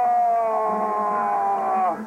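A man's long, wordless strained cry of effort during a hand-to-hand struggle. It is held as one note that slowly falls in pitch and drops off sharply at the very end.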